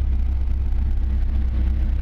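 Dodge Viper SRT10's 8.3-litre V10 idling steadily, a low even rumble.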